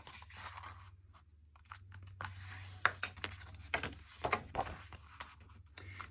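White card stock being folded and creased by hand on a cutting mat: paper sliding, rubbing and scraping in short, irregular strokes with a few light taps, starting about two seconds in.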